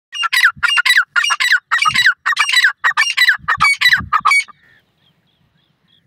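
Male francolin (teetar) calling: a rapid, loud series of harsh notes, each falling in pitch, about four a second, stopping after about four and a half seconds.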